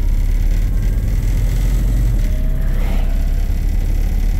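Steady low engine and road rumble of a 1962 Ford Thunderbird's V8 cruising, heard from inside the cabin. About a second and a half in, a faint tone rises gently in pitch.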